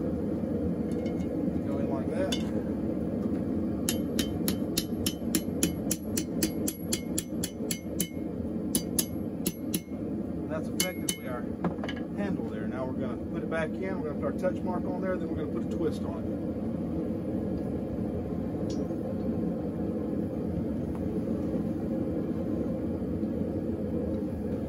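Light hammer blows on a steel bar at the anvil, about three a second, each with a bright ringing clink, bending the bar's end over the hardy hole; the striking stops about halfway through. A steady low rumble runs underneath.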